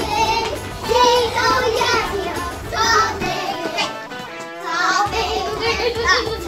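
A children's song with singing and a steady bass backing, with young children's voices joining in. The backing drops out for a moment a little past halfway, then comes back in.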